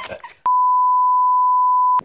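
A single steady 1 kHz beep, edited in about half a second in after the sound cuts to silence: a censor bleep laid over the dialogue.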